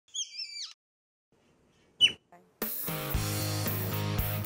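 A newborn river otter pup's high-pitched squeaky calls that fall in pitch: a short call at the start and a sharper, louder one about two seconds in. Background music starts just past halfway.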